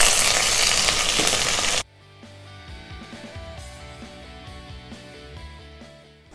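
Oil sizzling loudly as mustard seeds, dals and curry leaves fry for a tempering in a steel kadai. The sizzle cuts off abruptly about two seconds in, and soft instrumental background music follows.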